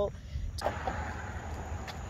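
Passing car traffic on the street: a steady rush of tyre and engine noise that starts suddenly about half a second in and holds.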